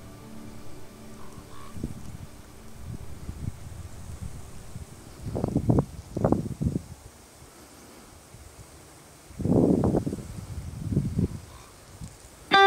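Wind gusting against the microphone in two rumbling bursts, the first about five seconds in and the second near ten seconds. The last notes of background music fade out in the first couple of seconds.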